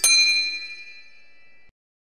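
A single bell-like ding sound effect, struck once and ringing with several clear high tones that fade away before cutting off abruptly after about a second and a half.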